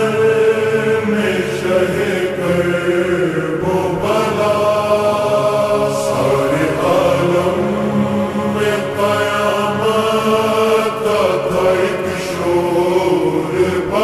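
Urdu noha, a Shia lament recited in a chant-like singing voice, slowed down and drenched in reverb, with long drawn-out sung lines.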